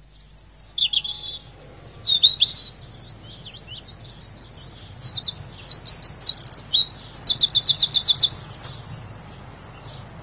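A songbird singing: a string of high chirps and whistled notes, with a fast trill of about eight notes a second near the end.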